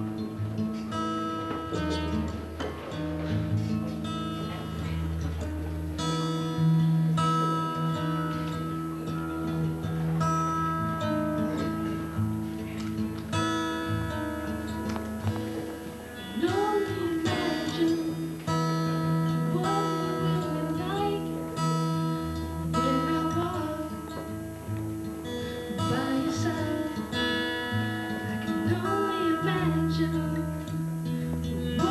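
Acoustic guitar strummed in a slow, steady chord pattern, live through a small PA. About halfway through, a woman's voice comes in, singing the melody over the guitar.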